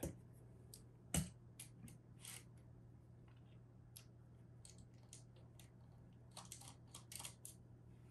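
Faint, scattered metallic clicks and ticks of a small screwdriver and pliers working a backplate screw and its nut on a graphics card, the sharpest click about a second in and a cluster near the end, over a faint steady low hum.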